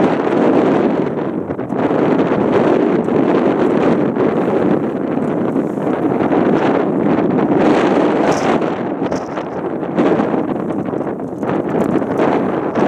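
Wind buffeting the camera microphone: a loud, continuous rushing noise that rises and falls slightly with the gusts.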